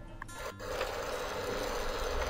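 Thin potato slices frying in hot oil in a pan: a steady sizzle that starts suddenly about half a second in.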